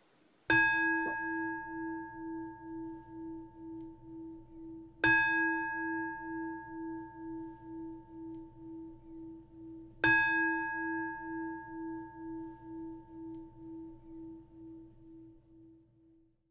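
A meditation bell (singing bowl) struck three times, about five seconds apart. Each strike rings on in a long, wavering tone that fades before the next, and the last dies away at the end. The strikes close the dharma talk.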